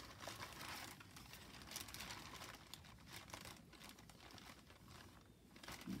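Faint rustling of paper and card being handled and shuffled on a desk, in irregular bursts that thin out after the first couple of seconds.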